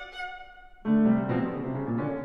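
Violin and piano duo playing a heavy gigue. A phrase dies away, then a loud entry with strong low notes comes in sharply just under a second in.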